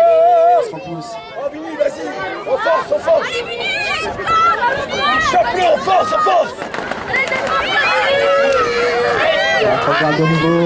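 Wrestling spectators shouting and chattering, many overlapping, mostly high-pitched voices calling out at once.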